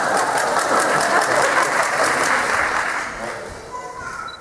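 Audience laughing and clapping in a large hall, dying away near the end.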